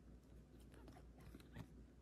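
Near silence: only faint handling of a stack of trading cards being flipped through in the hands.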